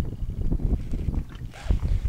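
Wind buffeting the camera microphone out on open water: a low, uneven rumble, with a soft knock near the end.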